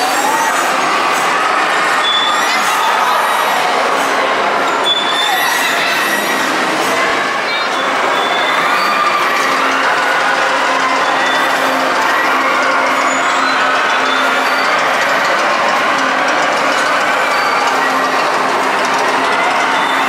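Amusement-park ride machinery running steadily, with short high squeals throughout and a low hum setting in a few seconds in.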